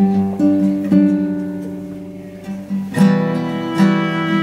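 Nylon-string classical guitar playing chords between sung lines: two plucked chords left to ring and fade, then a fuller strummed chord about three seconds in.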